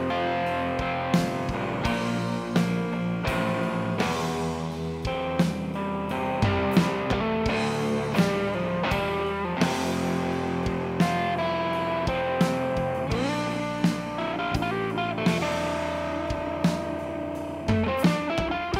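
Live rock band playing an instrumental passage: electric guitar lines over a drum kit, with steady drum hits throughout.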